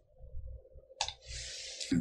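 A single sharp computer mouse click about a second in, followed by a faint hiss, under a low hum.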